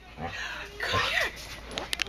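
Excited husky making breathy huffing vocal noises with a short whine that rises and falls about a second in, followed by a few sharp clicks near the end.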